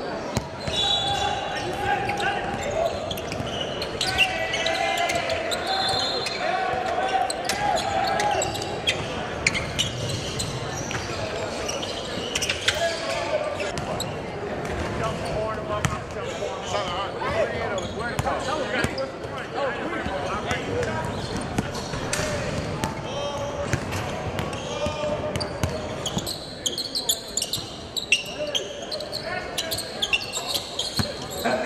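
Basketballs bouncing on a hardwood gym floor amid the indistinct shouts and chatter of players and onlookers, echoing in a large gym.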